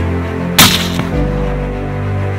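A single suppressed rifle shot about half a second in, the loudest sound, ringing briefly, followed by a fainter knock about half a second later; the hit sounded solid. Background music plays throughout.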